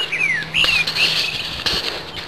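Birds chirping: a few short, high, falling chirps in the first second, then quieter.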